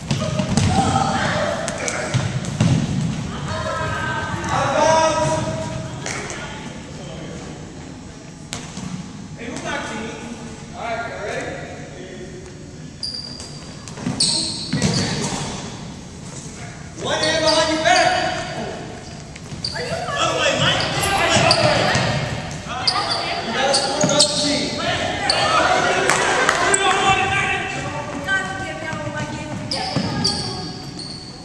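Players shouting and calling out during a game in a large gymnasium hall, with repeated knocks of a big ball being batted by hand and bouncing on the wooden floor.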